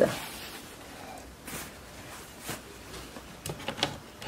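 Soft rustling of a cloth sheet being spread over a toy doll's bed, with a few light handling taps, a cluster of them near the end.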